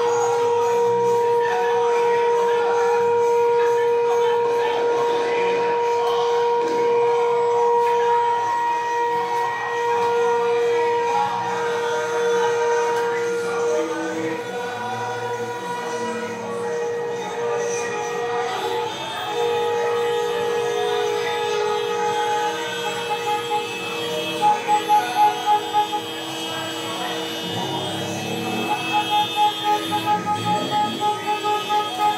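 Car horns sounding: one horn held in a long steady blast through roughly the first half, then rapid short toots of about four a second near the end, over music and voices.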